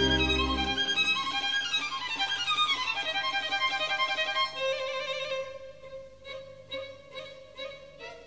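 Background music led by a violin: a run of notes falling in pitch, a long held note about halfway through, then quieter, shorter notes.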